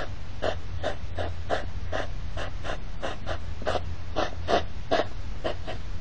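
Hedgehog courtship huffing: short, rapid, rhythmic puffs of breath about three a second, kept up without a break as the pair circle each other. This sound is the sign of the courtship 'carousel' that comes before mating.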